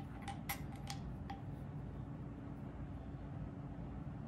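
A few light metal clicks in the first second and a half as a steel T block is set into a depth master gauge stand. A faint steady hum follows.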